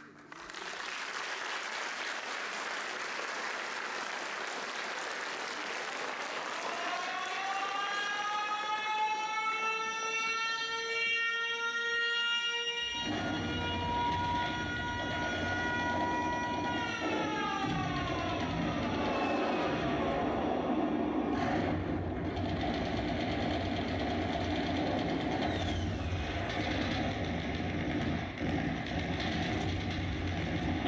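Air-raid siren played as a sound effect over the hall's speakers: its wail rises over several seconds, holds, then falls away. From about halfway through, a deep steady rumble runs on underneath. A noisy hiss at the start fades out as the siren rises.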